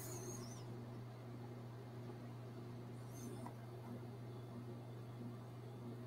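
Quiet room tone with a steady low hum, and faint high squeaks at the start and about three seconds in.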